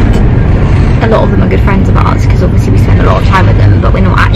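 Steady low rumble of a car's cabin on the road, under a woman's voice talking.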